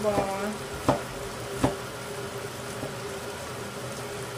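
Pork in shrimp paste frying in a frying pan, with a steady sizzle. Two sharp clicks come about one and one and a half seconds in.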